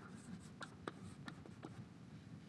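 Chalk writing on a blackboard: faint, short taps and scratches as each stroke of the letters is made, a few in two seconds.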